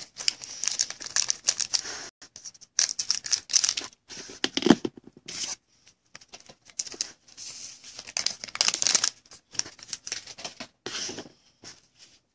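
Trading cards and a foil pack wrapper being handled: crinkling of the wrapper and cards rubbing and sliding against each other. It comes in short bursts with brief pauses, as the cards of a fat pack are worked through from the bottom of the stack.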